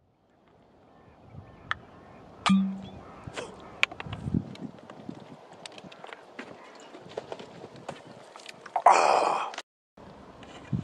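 Whisky drunk straight from a glass bottle: a sharp knock with a short hum about two and a half seconds in, then small clicks while he drinks, and a loud breathy exhale near the end.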